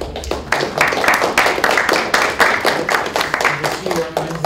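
A small group of people applauding with hand claps, building up in the first half-second and thinning out near the end.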